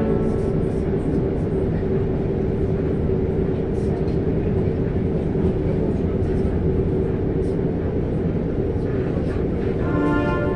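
Regional express train running at speed, heard from inside the carriage: a steady rumble of wheels on the rails with a constant hum.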